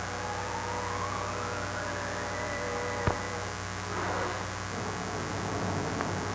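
Hum and hiss of an old 1940s film soundtrack, with a thin tone rising steadily in pitch over about two seconds and then holding, and a single sharp click about three seconds in.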